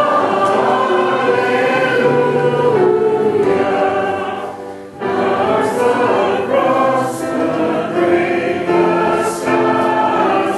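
A choir of many voices singing in long held phrases, with a brief pause about five seconds in.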